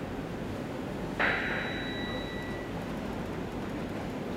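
A single high ding about a second in, ringing out and fading over about a second and a half, over a steady low hum.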